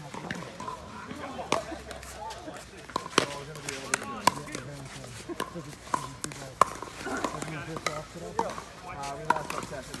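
Pickleball rally: paddles striking a hard plastic pickleball and the ball bouncing on the court. The result is a string of sharp, irregular pocks, roughly one or two a second, with background voices.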